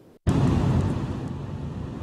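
Steady road and wind noise of a car driving at highway speed, heard from inside the cabin. It starts suddenly about a quarter second in, after a brief silence.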